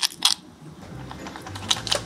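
A few light metallic clicks as a greasy VW T2 drive-shaft joint is worked apart by hand, two quick ones at the start and two more near the end.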